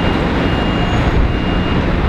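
A vehicle's reversing alarm beeping about once a second, a single high tone, over a steady low rumble.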